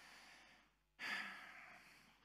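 A man's breathing close to a headset microphone: a soft breath in, then about a second in a louder sigh out that fades away.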